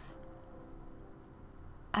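A faint, steady hum with a few held low tones, with no sharp sounds.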